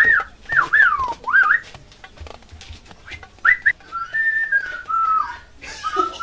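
A person whistling a tune: three quick upward-swooping notes, a pause, two short rising notes about halfway through, then longer notes that slowly fall in pitch.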